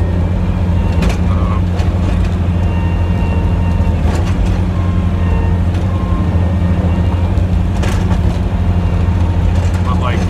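Snowplow truck's engine running steadily under load, heard from inside the cab as the blade pushes snow, with a couple of brief knocks.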